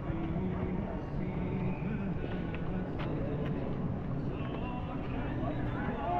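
Indistinct voices of people talking, with a few faint clicks around the middle.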